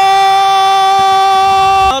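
A commentator's long held shout celebrating a goal: one loud, steady, high-pitched call sustained on a single note, cut off just before the end.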